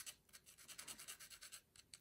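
Faint, irregular scratching of a wooden stick stirring graphite powder through a fine wire-mesh sieve.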